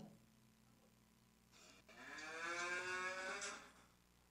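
Recorded cow mooing, played back through a phone's speaker: one long moo that begins about one and a half seconds in and lasts about two seconds.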